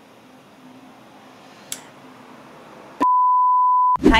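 Faint room tone, then about three seconds in a loud, steady, pure-tone bleep that lasts about a second and cuts off sharply, the kind of edited-in bleep tone used for censoring.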